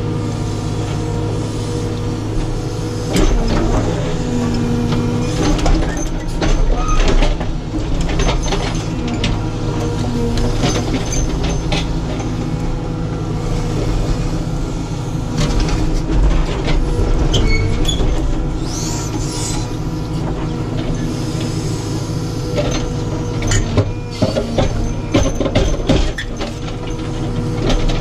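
Caterpillar 432F2 backhoe loader's diesel engine running steadily under digging load, heard from inside the cab. Scattered knocks and scrapes come from the backhoe bucket working through stony soil, bunched a few seconds in and again near the end.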